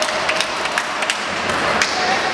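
Badminton rackets striking shuttlecocks: several short, sharp hits spread through two seconds, echoing in a large sports hall.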